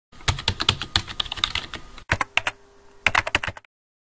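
Computer keyboard typing: a fast run of key clicks for about two seconds, then two shorter bursts of keystrokes with brief pauses between, stopping about three and a half seconds in.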